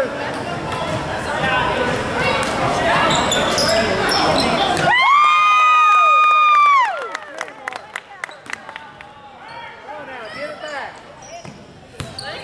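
Gym crowd noise and shouting for about five seconds. A steady horn tone then sounds for about two seconds, its pitch sagging as it cuts off, typical of a scoreboard horn. In the quieter gym that follows, a basketball bounces repeatedly on the hardwood floor.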